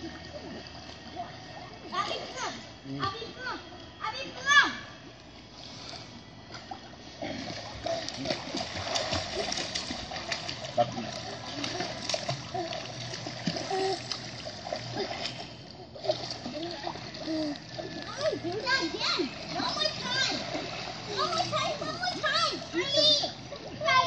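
Pool water splashing and sloshing as people wade and play in it, mixed with children's high-pitched voices and shouts, the loudest one about four and a half seconds in.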